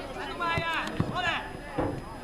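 Children's high voices shouting and calling out, rising and falling, with a short thump about a second in.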